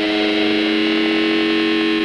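Rock music: a distorted electric guitar holds one sustained chord without a break.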